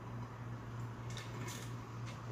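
Haircutting scissors snipping through wet hair: a few short, crisp snips in the second half, over a steady low hum.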